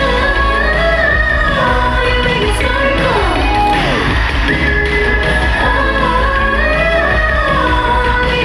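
A woman singing into a handheld microphone over an upbeat K-pop dance track played through a concert sound system, with a steady bass underneath. Her voice slides down in pitch in a long fall near the middle.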